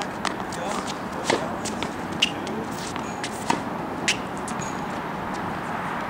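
A handful of sharp knocks and scuffs from tennis play on a hard court, spaced irregularly over the first four seconds, over a steady background hiss.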